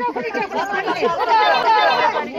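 Several women's voices talking and calling out over one another in excited, overlapping chatter.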